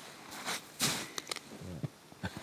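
Quiet pause in conversation: a man's short breathy exhale just before a second in and a few soft clicks, with a brief low vocal sound near the end.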